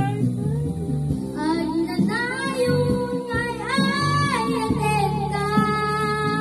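A young girl singing an Ilocano waltz into a microphone over a karaoke backing track with guitar. Her voice comes in strongly about a second in and holds long notes.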